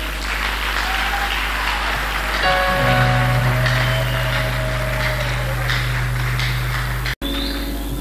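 Audience applauding, with music of long held chords coming in about two and a half seconds in. The sound cuts out for an instant near the end.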